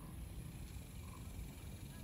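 Quiet outdoor background with a low, uneven rumble of wind on the microphone, and no distinct sound events.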